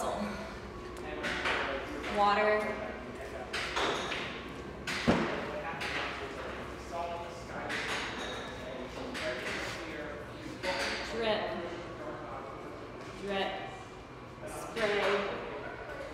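A voice speaking short single words at intervals, sound words such as "rustle" and "buzz", with one sharp thud about five seconds in.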